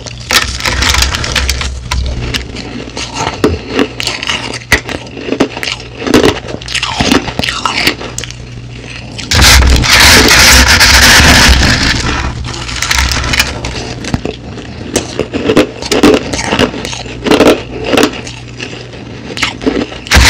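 Crushed ice crunching as it is chewed close to the microphone: many sharp, irregular crunches and crackles. About halfway through, a hand scoops through the pile of crushed ice on the plate with a loud, dense rustling for a couple of seconds.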